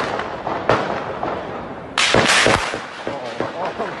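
Gunfire in a street shootout: a single shot, another a moment later, then a rapid burst of several shots about two seconds in, each echoing.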